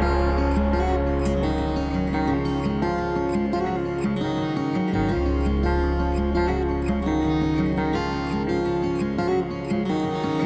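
Instrumental passage of a live band: acoustic guitar strumming over a held low bass note, which drops out briefly about halfway through.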